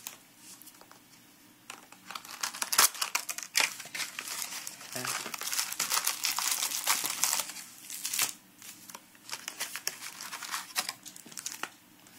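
Plastic and foil wrapping crinkling and tearing as a Yu-Gi-Oh! booster box is opened and its foil booster packs are handled, in quick runs of crackles after a quiet first two seconds.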